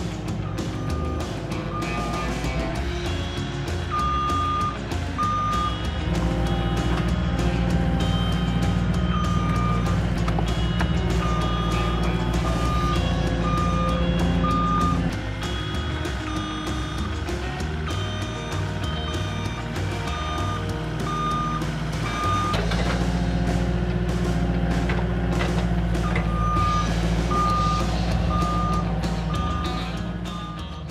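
Backup alarm of a Cat 259D compact track loader beeping about twice a second in several separate runs as the machine reverses and manoeuvres. Background music plays throughout.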